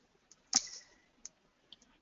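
Computer mouse clicks: one sharp click about half a second in, followed by a few fainter clicks, as a video is started playing.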